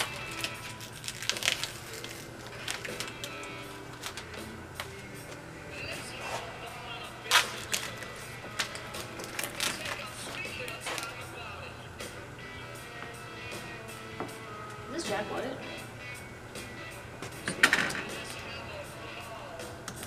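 Quiet background music playing, with scattered sharp clicks and rustles as vinyl wrap film is worked by hand on a truck canopy; the loudest clicks come about seven seconds in and near the end.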